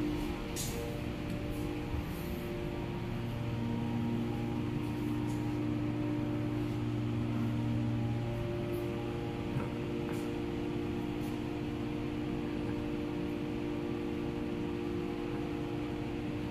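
A steady drone of several held low tones, one of which swells in for a few seconds partway through, with a few faint light ticks over it.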